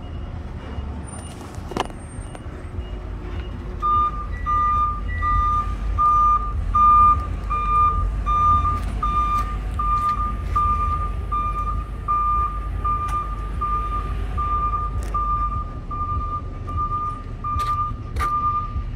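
A vehicle's reversing alarm beeping steadily about twice a second, starting about four seconds in, over a low engine rumble, with a few scattered knocks.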